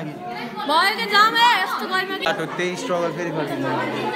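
Several people talking over one another inside a cave, with one high voice wavering up and down about a second in.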